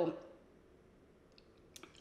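Quiet room tone with a few faint small clicks, a couple about a second and a half in and one just before the next word.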